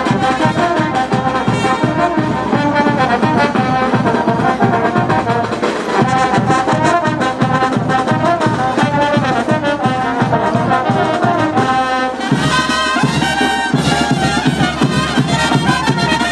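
A brass band playing a lively dance tune with a steady drum beat; about twelve seconds in it moves into a new passage of longer held notes.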